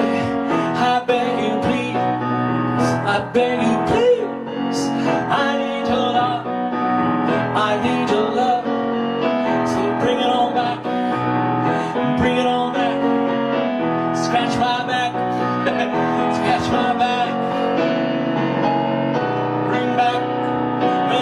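A man singing with piano accompaniment, his voice layered in two parts.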